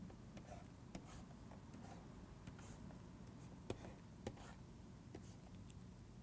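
Faint, irregular taps and light scratches of a stylus on a pen tablet as lines are drawn, over a low steady hum.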